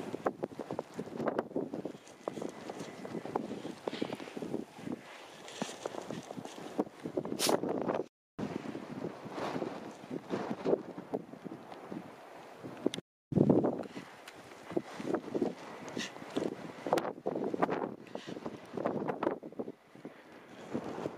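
Strong wind buffeting the microphone, with footsteps crunching through snow underneath. The sound cuts out briefly twice.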